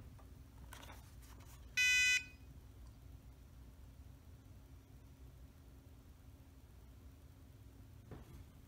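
A single short electronic beep from the iOptron CEM60 mount's Go2Nova hand controller as the mount is powered on and boots, about two seconds in, after a few faint clicks.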